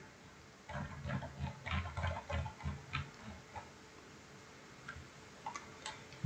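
Faint, even ticking of a computer mouse's scroll wheel, about four ticks a second, as a document is scrolled down a page, followed by a couple of single clicks near the end.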